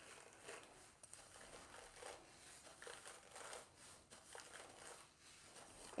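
Near silence with faint, irregular rustling from a brush being worked through a section of thick natural hair.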